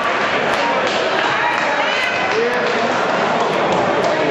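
Crowd of spectators shouting and cheering, many voices overlapping into a steady loud din.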